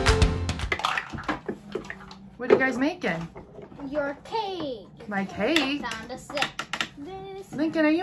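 Guitar-backed intro music ending within the first second, then young children's voices in short bursts of chatter as they play, with a few light clicks of plastic toy pieces.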